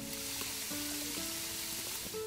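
A jet of water spraying into reeds with a steady hiss, over background music of soft held notes.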